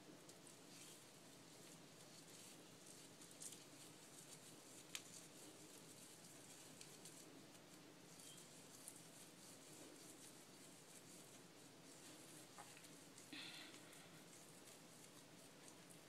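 Near silence, with faint rustling of hair being twisted by hand and a few small clicks, one sharper about five seconds in.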